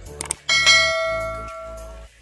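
Two quick clicks, then a single bell-ding sound effect rings out about half a second in and fades over about a second and a half. It is the notification-bell chime of an on-screen subscribe-button animation.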